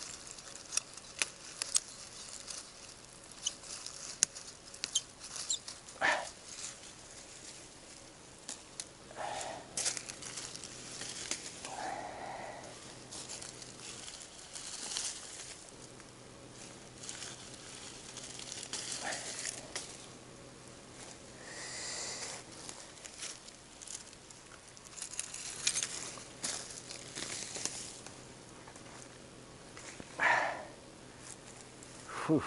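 Leafy plants and small saplings being pulled and broken by hand: irregular rustling of leaves and stems with frequent sharp snaps and cracks.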